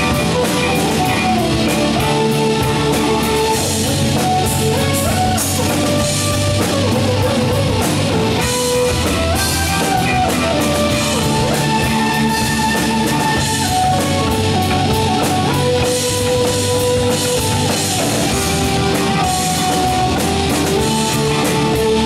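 Live hard rock band playing: electric bass guitar, drum kit with busy cymbals, and held keyboard notes moving in steps over the top, all steady and loud.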